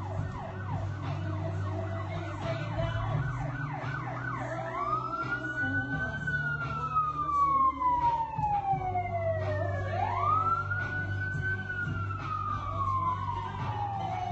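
Electronic siren sound with a fast yelp of about three sweeps a second. About four and a half seconds in it switches to a slow wail that rises quickly and falls over about five seconds, twice, over a steady low hum.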